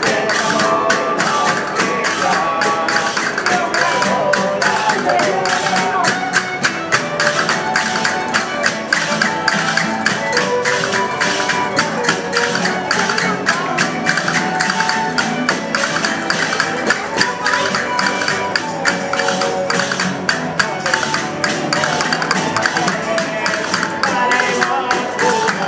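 A Spanish folk cuadrilla playing a Christmas villancico: violins carrying the melody over strummed and plucked strings, with a quick, even beat of sharp strikes.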